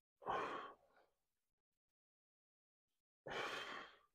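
A man's forceful exhalations of effort, two of them about three seconds apart, one with each pull of a seated resistance-band row.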